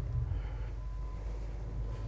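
Low steady rumbling hum with a faint thin tone above it, as background noise inside a small room.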